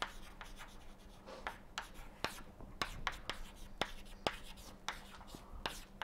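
Chalk writing on a blackboard: a quiet, irregular run of sharp taps and short scratches as symbols are chalked out.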